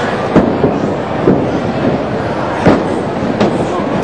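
Several sharp smacks of strikes landing between wrestlers in a ring, the loudest about a third of a second in and another just before three seconds, over the murmur of a crowd in a hall.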